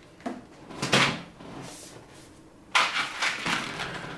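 Packaging being handled by hand: a couple of short knocks in the first second, then a longer rustle of plastic and card packaging near the end as a blister-carded parts pack is picked up.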